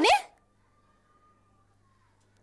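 A woman's sharp exclamation rising steeply in pitch, cut off about a quarter second in, then near-silent room tone with a faint steady hum.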